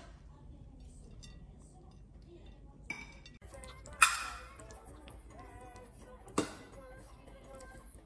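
A metal fork clinking against a ceramic plate as spaghetti is twirled: one sharp ringing clink about halfway through and a softer one a couple of seconds later.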